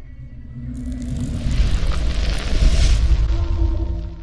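Cinematic music sting for an animated logo: a deep rumbling boom with a rushing, fiery swell of noise that builds from about a second in, then a low held tone as it fades near the end.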